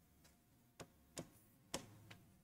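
Four faint, sharp taps at uneven spacing, the last and loudest near the end: a pen or stylus tapping on an interactive display board.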